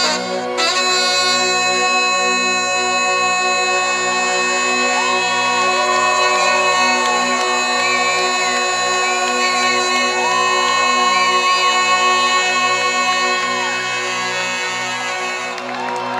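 Live rock band music with a saxophone solo: the sax plays a melody of bent, gliding notes over a steady held keyboard chord.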